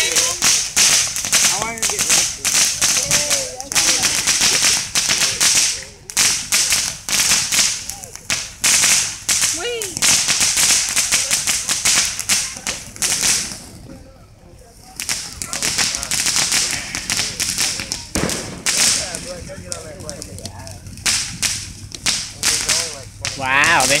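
Ground fountain firework spraying sparks with a dense crackling and hissing, fading briefly just over halfway through, then crackling again.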